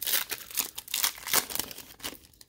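Foil wrapper of a Panini Mosaic basketball card pack being torn open by hand, with a quick run of crinkling and crackling.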